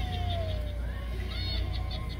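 Animated Hallmark Snoopy witch plush toys playing their electronic sound effects through small speakers: a high, chattering cackle over a long tone that slides slowly down, with a low steady hum underneath.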